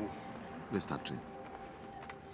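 Speech: a man's voice in short snatches at the start and about a second in, over a faint steady background drone.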